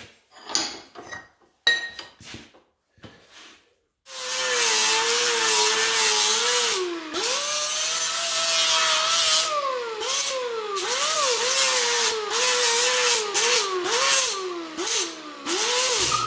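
Angle grinder grinding the cut end of a roll-cage tube flat, starting up about four seconds in after a few handling knocks. Its motor whine drops in pitch again and again as the disc is pressed into the metal, then cuts off near the end.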